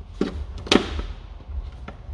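Plywood parts of a flat-pack Baltic birch basket knocking sharply as its floor panel is pressed down to seat into the walls' tabs and hooks: two knocks about half a second apart, the second louder with a short ring, and a faint tap near the end.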